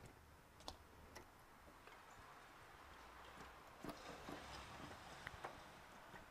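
Near silence with a few faint, sharp clicks and ticks from plastic liquidtight conduit and its fittings being handled and pushed together: a pair about a second in, more near the end.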